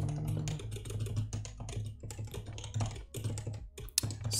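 Typing on a computer keyboard: a quick, irregular run of keystrokes that thins out near the end.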